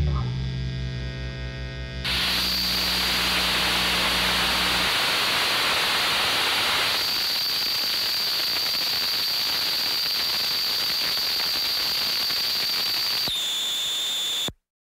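The band's last chord rings out and fades over about two seconds. Then a loud, steady static hiss with a high whine takes over, with a low hum under it that stops about a third of the way in; the whine steps down in pitch near the end.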